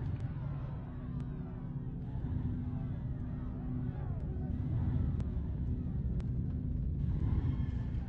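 A steady low rumble with faint, wavering distant voices over it.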